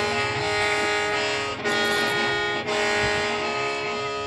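A Hmong qeej, a bamboo free-reed mouth organ, played in sustained chords over a steady drone. It comes in three phrases, with brief breaks between them.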